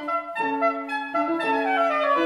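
Soprano saxophone playing a classical melody: a single line of quick, changing notes, several to the second.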